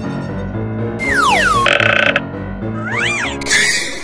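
Background music for an edited comedy clip with sound effects laid over it: a long falling whistle-like glide about a second in, a short noisy buzz after it, a quick rising-and-falling glide near three seconds, and a hissy burst just before the end.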